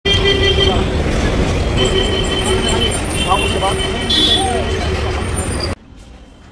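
Loud road traffic rumble with people's voices and a steady high tone over it, cutting off suddenly near the end.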